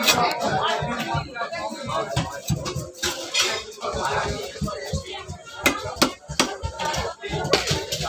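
Large rohu fish being cut by hand on a boti, an upright curved cutting blade: repeated irregular knocks, clicks and wet scraping as the fish pieces are pushed against the blade. Voices and music run in the background.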